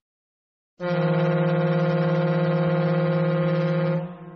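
Boat horn sounding one long, steady blast, starting about a second in: a low tone with many overtones.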